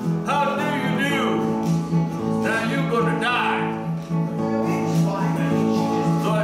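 Man singing a country song to his own strummed acoustic guitar.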